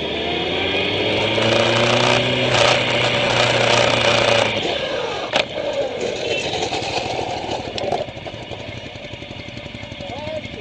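Motorcycle engine accelerating, its pitch rising over the first couple of seconds and then holding. About halfway through the throttle closes and the sound drops to a quieter run, with a single sharp click shortly after.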